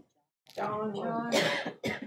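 A voice quieter than the surrounding speech, murmuring indistinctly for about a second, with a short breathy burst partway through.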